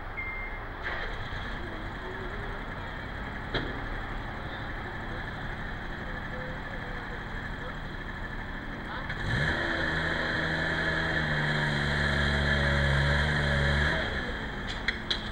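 Steady background noise with one sharp click, then about nine seconds in an engine rises in pitch and settles into a steady, louder hum.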